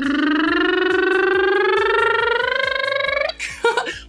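A man's voice making one long, rolling engine noise that imitates a truck driving. It rises slowly in pitch and stops abruptly a little after three seconds in.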